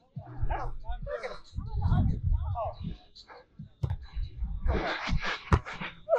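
Muffled, indistinct voices of players talking, with low wind rumble on the microphone in the first half. A few short sharp taps come about four to five and a half seconds in.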